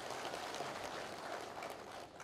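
A large seated audience applauding steadily, the clapping easing slightly toward the end.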